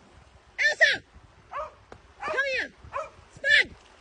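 A dog barking in a run of about five barks, one of them drawn out near the middle.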